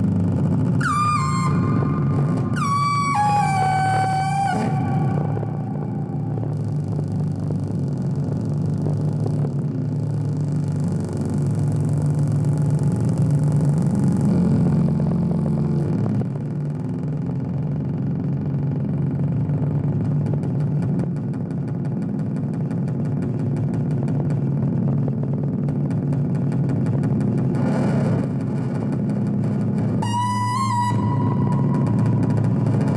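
Modular synthesizer and amplifier feedback improvising a noise drone: a dense, steady low drone. Over it, in the first few seconds, come pitched squealing tones that step downward, and a hiss rises and falls in the middle.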